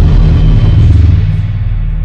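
Cinematic logo-intro sound effect: a loud, deep bass rumble under a hiss that fades and sinks away.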